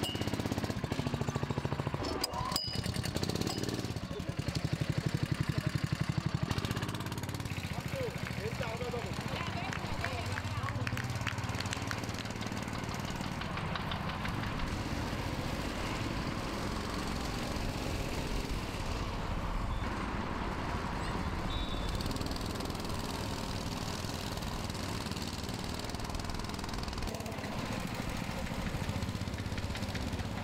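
Small go-kart engines buzzing as karts run around a track, louder for a couple of seconds about five seconds in.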